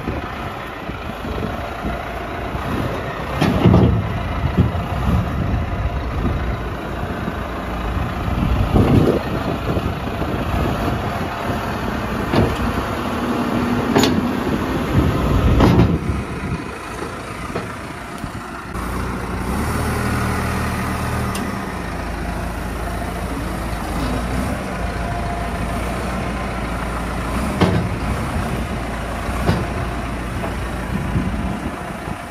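Massey Ferguson tractor engine running while the Trima front loader's hitch picks up a bucket, with several metal clanks in the first half as the attachment is coupled on. The engine then runs steadily.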